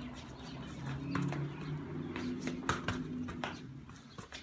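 Soccer ball being rolled and tapped with the foot on a concrete floor: a series of light taps and shoe scuffs, over a low humming tone in the background.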